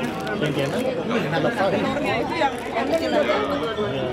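Several people talking at once: overlapping chatter of a small group, with no other sound standing out.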